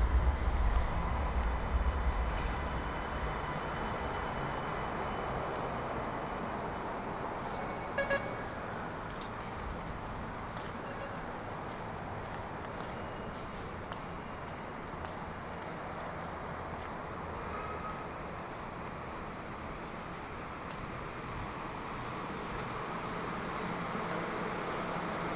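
Steady background hum of a rail transit station concourse, with a low rumble in the first couple of seconds and a short beep about eight seconds in.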